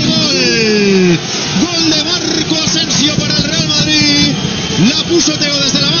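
A man's long, drawn-out, wavering shout, a commentator's goal cry, that falls in pitch and ends about a second in, over stadium crowd noise; after it the crowd keeps shouting with short scattered calls.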